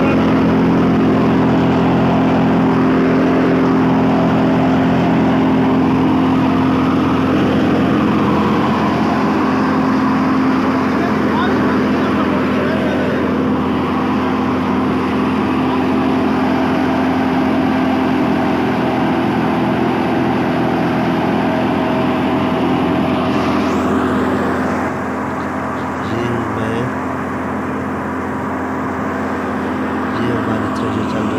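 Tractor-driven canola thresher running at a steady speed: a constant machine drone from the engine and the spinning drum, pulleys and belts. It becomes a little quieter about 24 seconds in.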